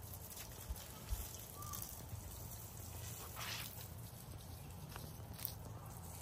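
Faint outdoor ambience with water running from an open-ended garden hose and splashing onto soil and plants. There are two soft thumps about a second in and a short hiss a little past halfway.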